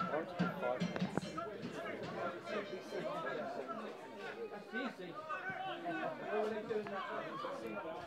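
Open-air sound of a lightly attended football match: several distant voices of players and a few spectators calling and chattering, overlapping, with no single voice standing out.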